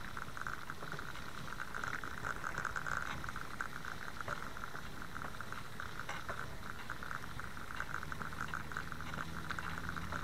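Bicycle riding over grass: a steady, rapid rattle of fine ticks from the moving bike. A low hum joins near the end.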